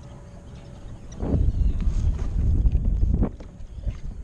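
Wind buffeting the camera microphone at sea: a low, loud rumble that rises about a second in and drops away about three seconds in.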